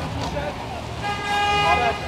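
A vehicle horn sounding one steady held note, starting about a second in, over low traffic rumble.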